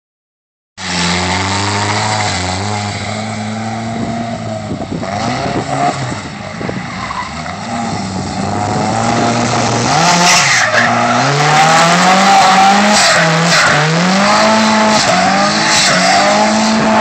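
A drift car's engine running hard as the car slides sideways, its revs rising and falling again and again in the second half as the throttle is worked, with tyres squealing. The sound starts about a second in.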